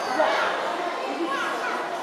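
Background chatter of several young people's voices talking and calling over one another in a gym hall.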